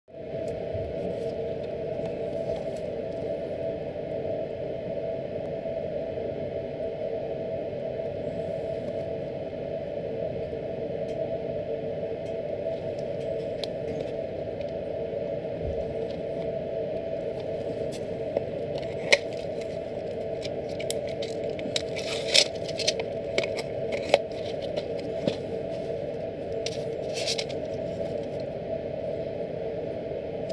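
A cardboard tablet box and a foil blister strip handled in gloved hands: scattered clicks and crackles, thickest in the second half, over a steady hum.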